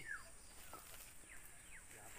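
Faint outdoor quiet with a few short, falling bird chirps.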